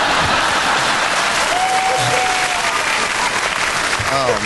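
Studio audience applauding steadily, with a single voice briefly calling out above the clapping midway through.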